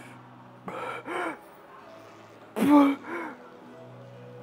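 A man grunting with effort through cable lateral raise reps: two pairs of short, strained exhalations about two seconds apart, the second pair louder.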